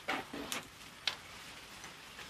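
Two sharp clicks about half a second apart from a medieval stirrup crossbow as its drawn bowstring is set over the catch and the weapon is lifted.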